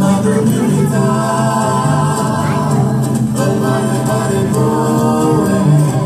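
Music with several voices singing together in long held notes, at a steady level.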